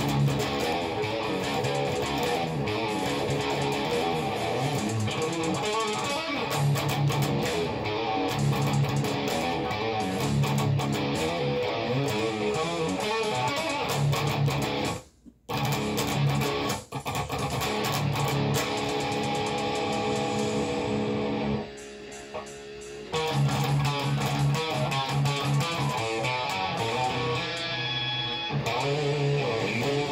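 Electric guitar playing a lead part over a recorded backing track of the song. The music stops dead for a moment about halfway through, and thins out for a second or so later on before coming back in full.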